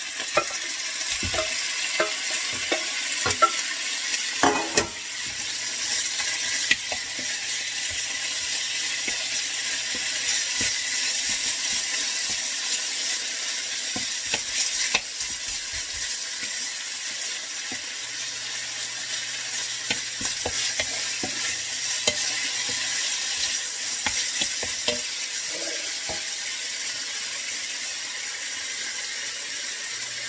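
Sliced beef frying with shallots in a nonstick pan over medium-high heat: a steady sizzle, with knocks and scrapes of a wooden spoon stirring, thickest in the first five seconds as the beef goes in.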